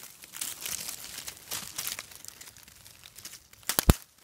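Dry leaves and twigs rustling and crackling as they are pushed aside close to the phone's microphone, with a few sharp clicks shortly before the end.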